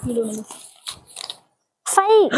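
A small folded paper slip being unfolded by hand, giving a few faint, short crinkles about a second in.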